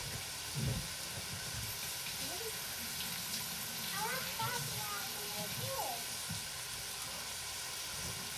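Chopped onions and other vegetables sizzling steadily in a frying pan on the stove.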